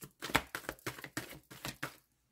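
A deck of tarot cards shuffled overhand between the hands, the cards slapping against each other in a quick run of sharp clicks, about six a second, the loudest near the start.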